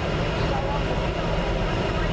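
Steady rumble and hiss of a car's cabin as it creeps along in slow highway traffic, engine and road noise heard from inside.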